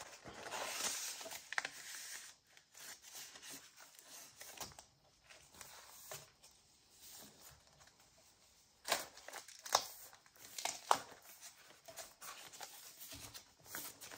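Paper rustling and sliding as a printed card is worked into an envelope pocket of a paper junk journal, then a few sharp paper taps and flicks from about nine seconds in as the journal pages are closed and handled.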